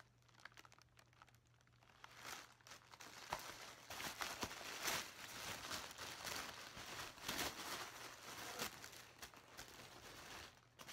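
White wrapping paper crinkling as it is handled and unwrapped by hand. Faint at first, then an uneven stretch of rustling from about two seconds in.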